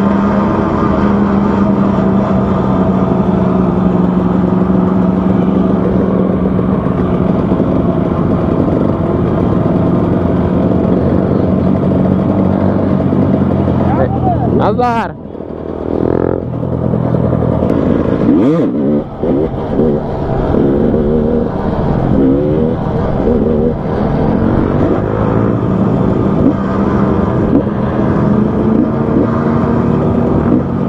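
Motorcycle engine running under way in a steady drone, with the throttle shut and the revs dropping and climbing again about halfway through, a second short dip a few seconds later, and wavering revs after that; other motorcycles in the group run alongside.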